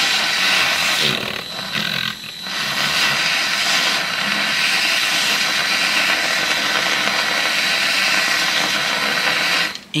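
Battery handheld milk frother whirring steadily as it whisks hot milk into foam, with a brief dip about two seconds in, stopping just before the end.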